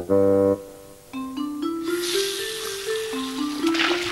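Background music for a children's cartoon: a held chord, then a simple melody of single notes stepping up and down. A rushing hiss of water splashing at a washbasin joins about halfway.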